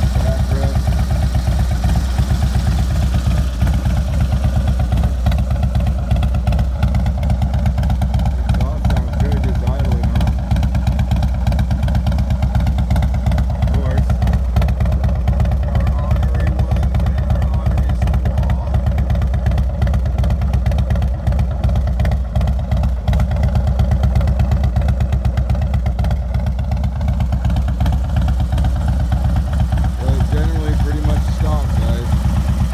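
Harley-Davidson V-twin engine idling steadily, with a rapid low pulsing throughout.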